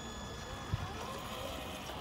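Wind buffeting the microphone, over the faint whine of a Traxxas TRX-4 radio-controlled crawler's electric motor, its pitch wavering up and down as the truck crawls over rocks.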